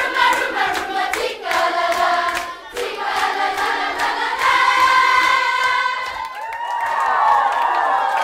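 A group of children singing together in unison, with hand clapping through the first few seconds. From about six seconds in, the held notes break up into many overlapping voices.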